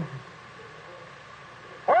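A pause in a man's preaching: his voice trails off with a falling pitch, then only the faint steady hiss of the old sermon recording until he starts speaking again near the end.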